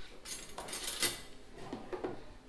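Metal cutlery being laid on a wooden-framed place-setting board around a plate: a few light clinks, the sharpest about halfway through.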